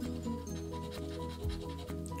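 Background music of steady held notes, with a coin faintly scratching the coating off a lottery scratch-off ticket.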